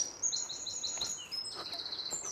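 Songbird singing: a phrase of about five quick high repeated notes, then a faster run of high notes in the second half.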